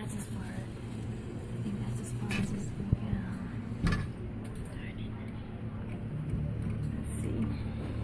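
Arcade background: a steady low machine hum with faint voices talking at a distance and a couple of brief clicks, one about three seconds in and another a second later.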